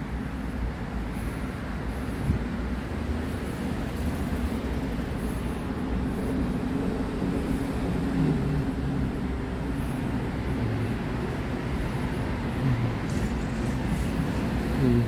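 Steady low rumble of urban road traffic, with a passing vehicle's engine tone wavering in pitch around the middle and again near the end.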